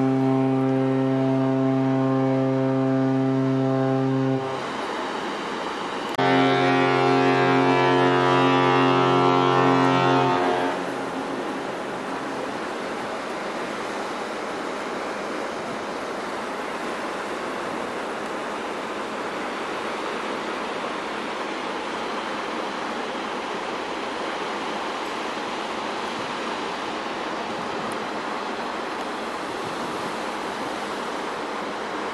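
Carnival Pride cruise ship's fog horn sounding two long, deep, steady blasts of about four seconds each, the second starting about six seconds in. It is being sounded as a fog signal. After the blasts there is only a steady hiss of wind and sea.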